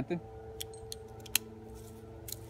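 Small metal clicks of a Rock Exotica Omni swivel mini pulley and its connector being handled and clipped onto a climbing saddle's bridge, the sharpest click a little past halfway, over a faint steady hum.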